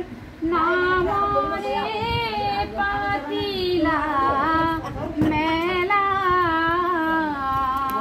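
A woman's high voice singing a devotional song in long, held notes that waver and bend in pitch, with a short pause for breath just after the start.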